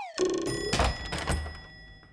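Sound effects for an animated TV logo: a few thunks and knocks as the logo pieces land, with a thin ringing tone from about half a second in that fades away as the whole grows quieter toward the end.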